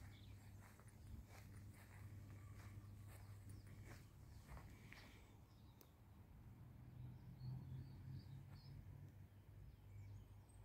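Near silence: a faint outdoor background with a low hum and scattered faint ticks, and a few faint high chirps near the end.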